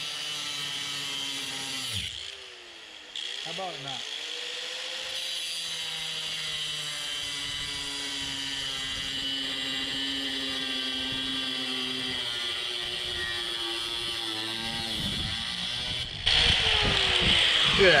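Angle grinder with a cut-off disc cutting through a metal bar. It winds down about two seconds in, starts up again and runs under load, its pitch sagging slowly as it cuts, then spins down near the end, followed by louder knocking and handling noise.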